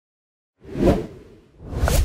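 Whoosh sound effects for an animated logo: one swells in about half a second in and fades, then a second builds near the end with a short pitched plop and a low rumble underneath.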